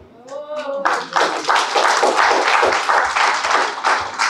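A small group of people clapping for about three seconds, starting a second in and stopping just before the end, in answer to the punchline of a spoken story.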